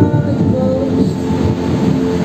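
Live church worship band playing an instrumental passage between sung lines: held chords over a dense low rumble from the bass end of the mix.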